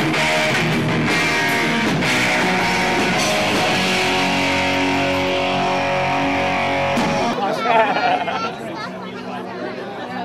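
Live rock band playing with loud electric guitars, holding sustained notes. About seven seconds in the music cuts off abruptly and gives way to crowd voices chattering.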